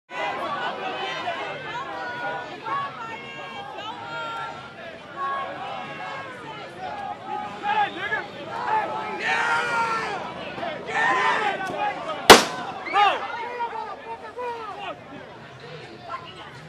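A crowd shouting and talking, cut through by a single loud gunshot about twelve seconds in.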